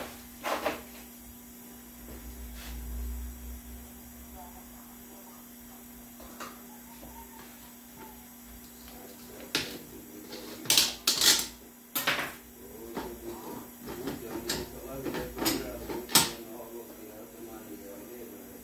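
Steel clutch plates and friction discs clinking and rattling against each other and the metal drum as a 6-speed automatic transmission's clutch pack is handled and lifted out, with a run of sharp metallic clinks from about ten seconds in. A steady low electrical hum sits underneath.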